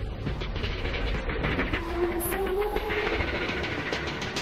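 Steady low rumble of distant vehicle noise, with a faint held tone that rises slightly about two seconds in.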